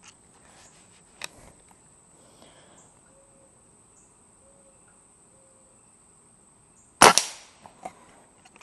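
A single shot from an Umarex Komplete NCR .22 nitrogen-powered air rifle fired offhand: one sharp crack about seven seconds in with a short ringing tail, after a quiet pause while aiming.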